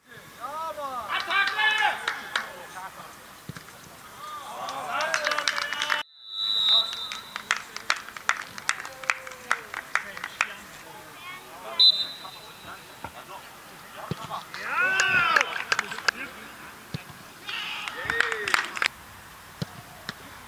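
Footballers shouting to one another on an outdoor pitch, with two short, high referee's whistle blasts, one about six and a half seconds in and one near twelve seconds, and scattered sharp knocks in between. The sound drops out briefly at the start and about six seconds in.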